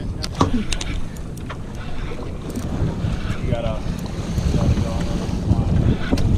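Wind buffeting the microphone on a small boat at sea, a steady low rumble, with a few sharp clicks in the first second or so and muffled voices in the background.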